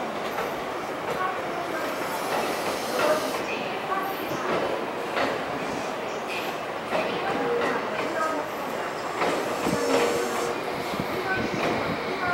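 Train cars rolling slowly through a rail yard while being shunted by a JR DE10 diesel locomotive: wheels click over rail joints and points, with occasional short squeals.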